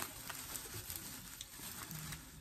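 Faint rustling and a few light clicks of packaged craft supplies being handled on a table.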